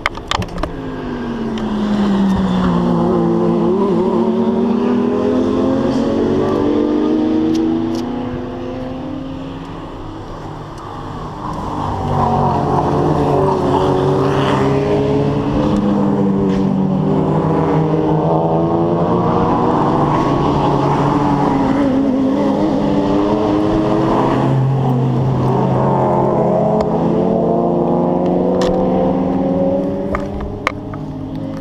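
Race cars passing on the circuit one after another, their engines revving and changing pitch as they go by and accelerate away. There is a lull about eight to eleven seconds in, then cars pass almost without a break.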